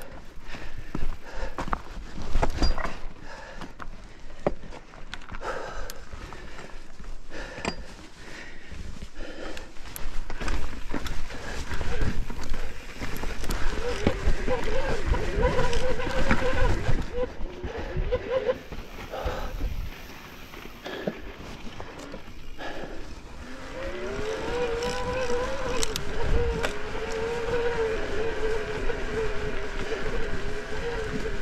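Electric mountain bike's motor whining under pedalling, heard twice: in the middle, and again from about three-quarters of the way through, when its pitch rises quickly and then wavers. Throughout, the bike rattles and knocks as it rolls over a rocky trail.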